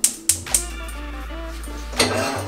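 About four quick, sharp clicks in the first half second, a gas cooktop's burner igniter being turned on, then background music with a steady low bass note under a simple melody.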